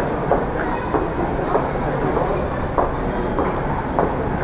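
Luggage trolley wheels rolling over a tiled floor: a steady rumble broken by irregular short clicks, with crowd chatter behind.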